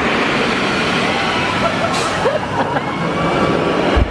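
Steady, loud rushing noise with a few faint voices or shouts about two seconds in.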